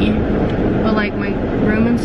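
Steady low rumble of a car's engine and road noise heard from inside the cabin while driving, with a voice talking over it partway through.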